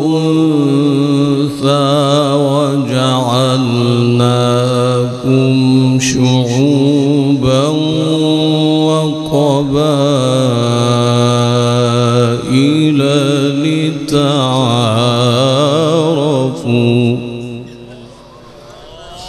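A male qari reciting the Quran in a melodic, chanted style, holding long notes with rapid wavering ornaments. Near the end the phrase stops and trails off in a fading echo.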